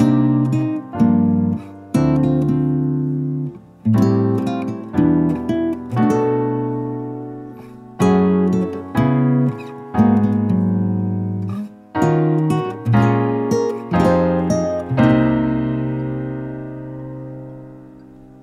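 Acoustic guitar and piano playing together a progression of minor seventh chords moving clockwise around the circle of fifths, a new chord about every second, with the last chord left ringing for about three seconds near the end. The chain of chords is heard as growing steadily brighter, like it is expanding.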